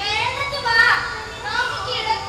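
Speech: a high-pitched voice speaking stage dialogue in Malayalam.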